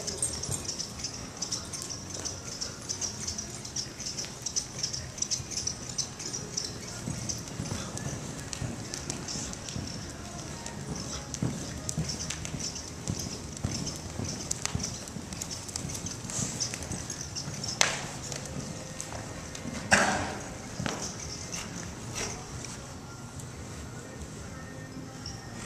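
Hoofbeats of a ridden horse loping on the soft dirt footing of an indoor arena, in an uneven rhythm. Two sharp loud sounds come near the end, about two seconds apart, the second the loudest.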